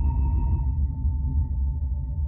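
Cinematique Instruments Landscape software synth playing an ambient drone: a deep, fluttering bass rumble under steady high tones, with the highest tone fading out less than a second in.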